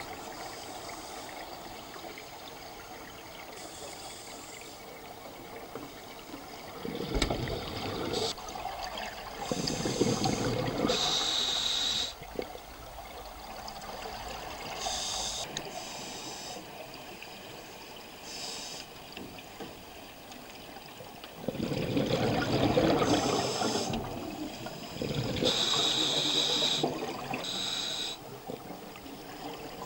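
Scuba regulator breathing underwater: several breaths a few seconds apart, each a hiss of air and a gurgling rush of exhaled bubbles, the loudest around the middle and near the end.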